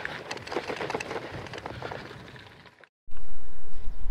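Bicycle tyres crunching over a gravel track, a crackle of many small ticks that fades away over the first few seconds. After a brief gap, a loud steady low rumble takes over.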